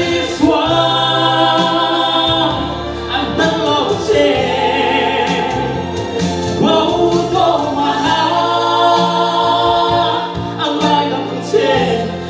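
A man singing a slow song into a handheld microphone, holding long notes, over musical accompaniment with steady low notes.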